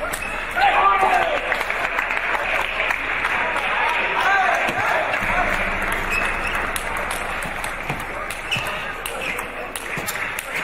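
Table tennis rally: the celluloid ball clicks sharply off the paddles and table. Under it runs a steady murmur of voices in a large hall, with a few raised calls.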